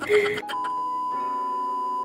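A 'please stand by' TV test-card sound effect: a steady electronic tone held over a sustained chord at constant loudness, starting about half a second in.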